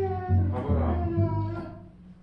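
Upright double bass playing a line of low notes, moving from note to note about every half second during a sound check, with a wavering higher line above it; the playing fades away near the end.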